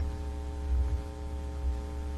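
Steady electrical mains hum with a buzz of evenly spaced higher overtones. Two brief low thumps come through, about a second in and near the end.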